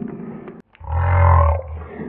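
A man's deep, drawn-out growl lasting about a second, in the middle, after a shorter rough vocal sound at the start.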